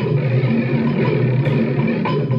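Amplified experimental electronic sound played through a guitar amplifier: a steady, dense drone with a low hum under a rough, noisy layer.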